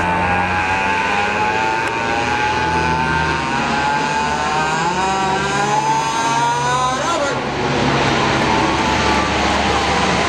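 Lockheed C-130 Hercules with four turboprop engines flying low overhead, a loud drone with a high whine. The whine rises slowly, then its pitch drops sharply about seven seconds in as the aircraft passes overhead and moves away, leaving a rougher, noisier roar.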